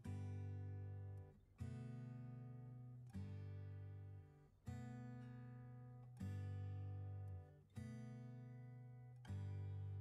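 Background music: an acoustic guitar strumming slow chords, one about every second and a half, each left to ring and fade before the next.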